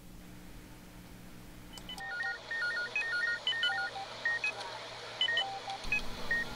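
A faint low hum, then about two seconds in a simple melody of thin, pure beeping tones begins, short notes stepping quickly up and down in pitch.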